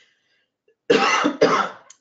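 A woman coughing twice in quick succession, about a second in.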